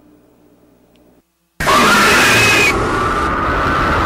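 A faint low hum, a moment of dead silence, then a sudden loud burst of harsh noise with a wavering, shriek-like tone over it, easing slightly after about a second but staying loud: a horror-style sound effect marking the ghost's appearance.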